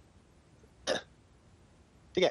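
A single short throat sound from a man, a brief cough-like catch about a second in, against quiet room tone.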